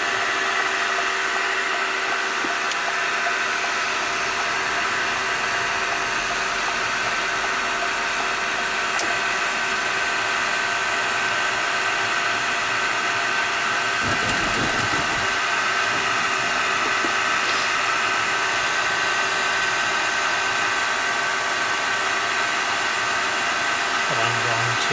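Steady whir of a heater fan blowing inside a car's cabin, over the engine and road noise of a car driving slowly. A brief low rumble comes about fourteen seconds in.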